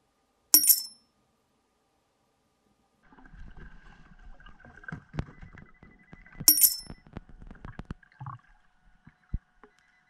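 Two short, bright, high chimes, one about half a second in and one at about six and a half seconds, like a small bell struck. From about three seconds, muffled clicks and knocks of underwater digging through sand and rock.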